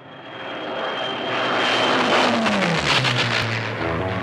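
Aircraft engine noise swelling up from nothing and passing, its pitch sliding down in the second half as it goes by.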